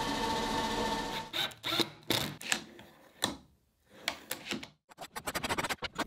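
A small power drill running steadily for about a second, then stopping. Light clicks and knocks follow as a metal ball-bearing drawer slide is handled and fitted against a wooden drawer side, ending in a quick run of rapid clicks.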